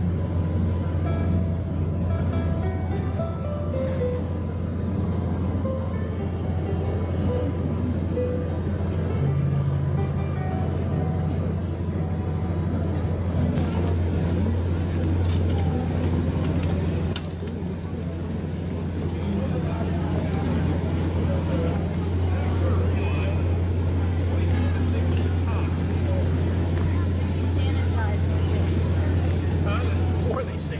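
Outdoor crowd of tourists talking, over a steady low rumble. A melody of short notes is heard mainly in the first several seconds.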